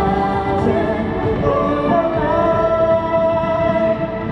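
Female singer singing live into a handheld microphone over music, rising into one long held note through the second half.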